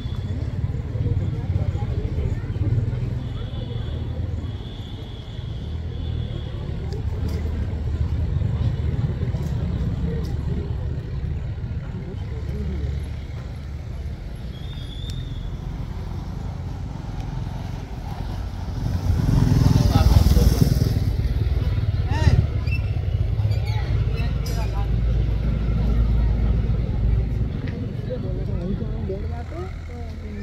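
Steady low rumble of wind on the microphone, with faint voices of people in the background. A louder rushing swell comes about two-thirds of the way through.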